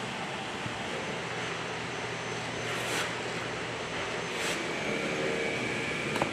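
Workshop ambience: a steady hiss of machinery and ventilation noise, with a low hum in the first half and two brief swishes about three and four and a half seconds in.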